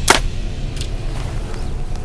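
A compound bow being shot: one sharp crack of the release just after the start, then a fainter click a little under a second later, over a low steady rumble.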